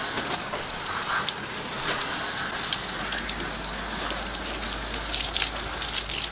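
Garden hose on a light spray showering water onto paver stones, a steady hiss of falling drops pattering on the wet surface. The water is wetting polymeric sand in the joints to set it.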